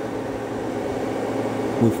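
Steady electrical hum and fan whir from an inverter running under a heavy load of about 55 A, with an electric fan plugged into it running. The sound steps up slightly in level at the start and then holds steady.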